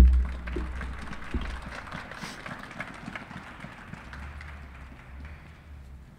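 A single low thump at the very start, then outdoor urban background with a low rumble and faint scattered taps that thin out over the next few seconds.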